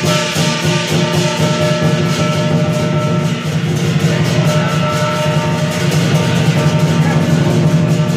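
Chinese lion dance percussion, loud and without a break: a big drum beaten in fast, dense strokes with crashing hand cymbals and a ringing gong.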